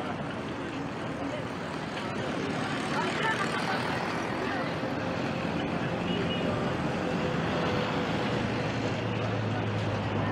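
Outdoor road ambience of a walking crowd: a mix of people's voices and engines from slow-moving traffic, with a low engine hum joining near the end.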